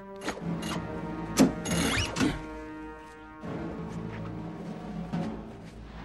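Film score with sustained, steady orchestral tones. Over it, a handful of sharp clicks and rubbing sounds in the first couple of seconds, the loudest about one and a half seconds in: wrist restraints being fastened to a whipping frame.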